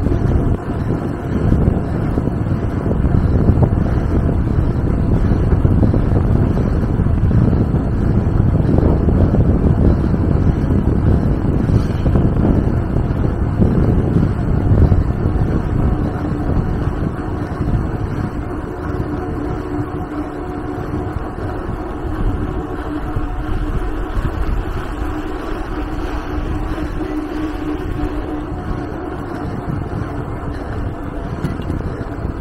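Wind buffeting the microphone of a handlebar-mounted camera on a moving bicycle: a loud, steady low rumble that eases a little about halfway through.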